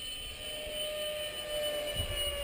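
Electric ducted fan of a 64 mm RC F-18 jet flying overhead: a faint, steady whine.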